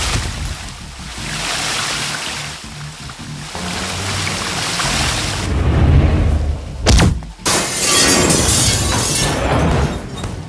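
Film fight-scene sound effects over background music: a sharp hit about seven seconds in, then glass shattering, bright and dense, through the last couple of seconds.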